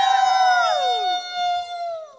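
A group of voices joining in one long cheer: one high voice held steady while the others slide down in pitch, dying away near the end.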